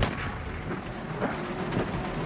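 A single sudden gunshot-like boom at the very start, trailing off in a long, echoing tail: a dramatic rifle-shot sound effect.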